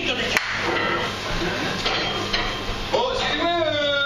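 Performers' voices on a small stage, no clear words, with one sharp knock about half a second in. Near the end a drawn-out voiced sound slides down in pitch.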